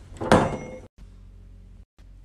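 A door bumping once as a hanging robe is grabbed, ringing out for about half a second; then a low steady hum.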